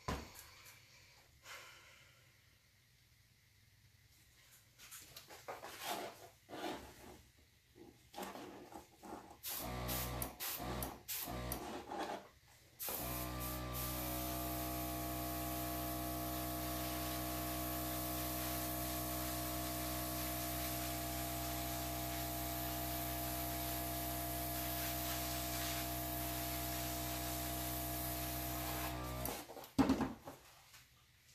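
Air gun blowing on wet acrylic paint: a few short hissing blasts, then a long, steady hiss with a constant hum underneath, which cuts off suddenly near the end.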